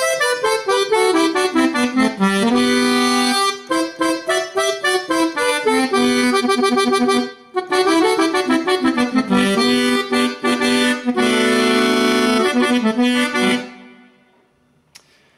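Sampled Weltmeister accordion in dry tuning, without the wavering of a tremolo-tuned box, played from a Korg keyboard in norteño style. It plays quick runs of notes and held chords, breaks off briefly about halfway, repeats the phrase and stops just before the end.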